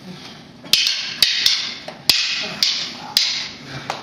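A string of sharp, irregular clacks and smacks from strikes in a Filipino martial arts drill, about eight of them in quick succession starting near the first second, each with a short echo of the hall.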